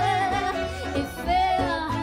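Live jazz performance: a woman singing a wavering held note with vibrato, over band accompaniment with a low bass line.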